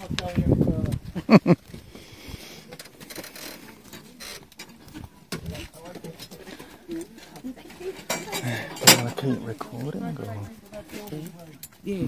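Indistinct chatter of several people walking close by, with a few sharp knocks and clatters early on and a loud click about nine seconds in.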